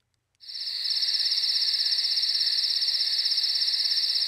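Crickets chirping in a steady, fast, high trill that fades in about half a second in: a night-time ambience.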